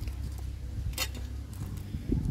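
A knife prying open a roasted oyster's shell, with one sharp click about a second in, over a steady low background noise.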